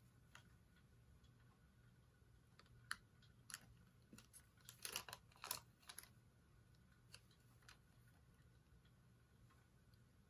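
Near silence broken by a few short paper crinkles and clicks, most of them in a brief cluster about halfway through: paper receipts being handled beside a planner.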